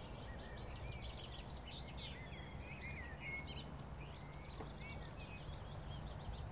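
Several small birds singing at once, a busy run of quick high chirps and trills that overlap throughout, over a low, uneven rumble.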